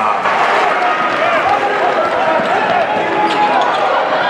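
Live basketball game sound in an arena: a crowd of many voices calling out, with a basketball being dribbled on the hardwood court.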